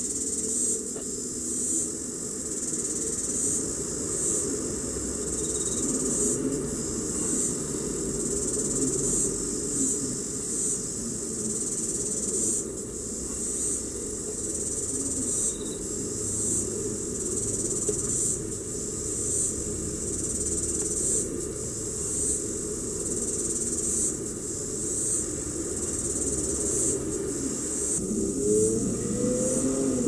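Insects, cricket-like, keep up a high, steady chirring broken into short pulses, over a low background hum.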